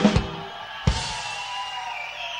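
Live drum kit accents: two quick hits at the start, then a bass drum hit with a cymbal crash about a second in, the cymbal ringing on and slowly fading.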